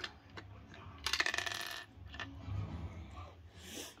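Small plastic Lego pieces and minifigures clicking and rattling as hands handle them, with a quick dense rattle about a second in and a shorter one near the end.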